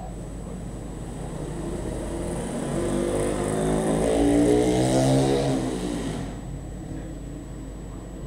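A motor vehicle driving past close by: its engine sound swells to a peak about four to five seconds in, then fades away.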